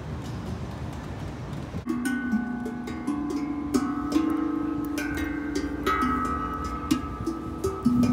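Stainless steel playground drums struck by hand, starting about two seconds in. Many strikes follow, each ringing on in clear sustained notes that overlap one another. Before the drumming there is only steady background noise.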